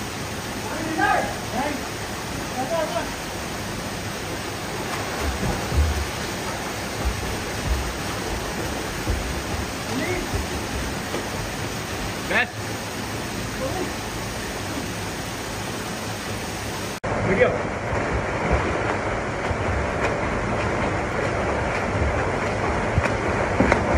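Steady rush of a small waterfall pouring into a rock pool, with some splashing from people in the water and a few brief calls. About three-quarters of the way through, the sound cuts abruptly to a duller recording of the same rushing water.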